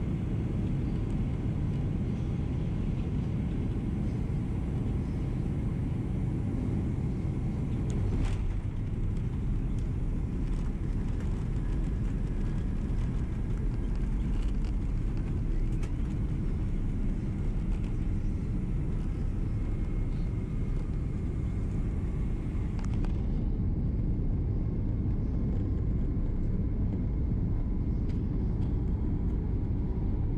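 Cabin noise of a Boeing 767-300 airliner landing: a steady, loud rumble of engines and airflow. A brief thump about eight seconds in marks the wheels touching down, and the rumble carries on through the rollout, losing some of its hiss near the end.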